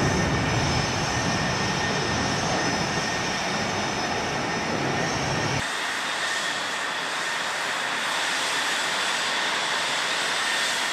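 The twin jet engines of an F/A-18C Hornet running at ground idle, a steady rumble with a high turbine whine over it. About halfway through, the low rumble drops away abruptly, leaving mostly the whine.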